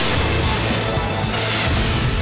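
Action background music with sci-fi energy-beam firing sound effects, a steady loud hiss over a low hum.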